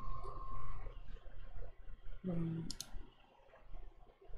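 A couple of sharp clicks close together, nearly three seconds in, just after a short hum of a man's voice; a faint steady tone runs through the first second.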